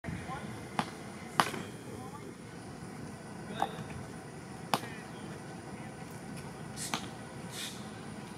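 Five sharp clicks at irregular intervals over steady outdoor background noise.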